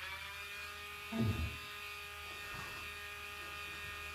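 Dremel rotary nail grinder running with a steady whine, its pitch rising briefly just after it is switched on and then holding level.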